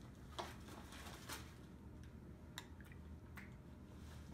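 Paintbrush strokes and dabs on paper, a handful of short, soft strokes over a low steady room hum.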